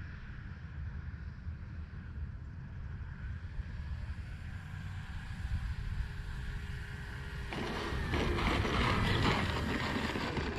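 Electric motor and propeller of an RC Carbon Z Cessna 150T on landing approach, faint at first under a low wind rumble on the microphone, then growing louder from about seven and a half seconds in as the model comes in close on the runway, its high motor whine dropping slightly in pitch.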